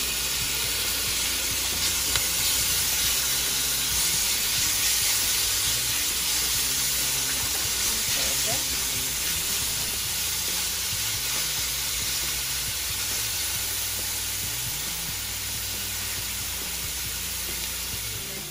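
Sliced onions and garlic sizzling steadily as they sauté in a stainless-steel skillet, stirred with a spatula.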